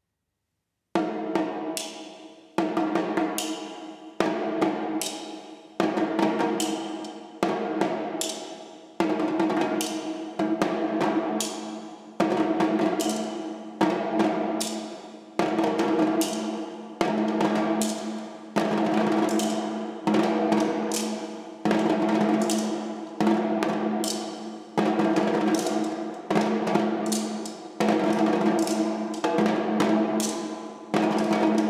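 Several djembe drums struck with sticks in a steady rhythm, with a strong accent about every second and a half and lighter strokes between. The playing starts about a second in, over a steady sustained low pitched sound.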